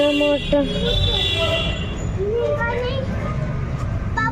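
A person's voice making drawn-out, wordless sounds in a few spells, over a steady low outdoor rumble.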